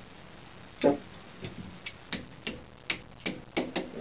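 Irregular sharp clicks, about eight over roughly three seconds, from the axle being refitted through a compound bow's cam and limb tip while the bow is held in a bow press.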